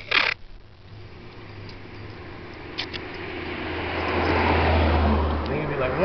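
A short rip of masking tape pulled off its roll right at the start, then a vehicle driving past on the road, its engine hum and tyre noise swelling to a peak about four to five seconds in.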